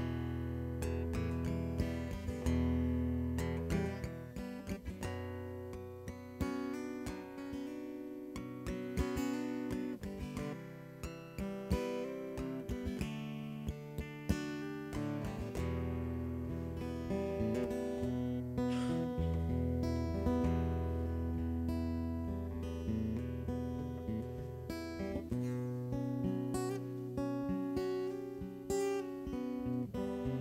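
Acoustic guitar strumming chords over a low, sustained bass, an instrumental passage of a worship song with no singing.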